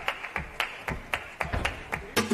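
Flamenco music reduced to a steady beat of sharp handclaps, about four a second.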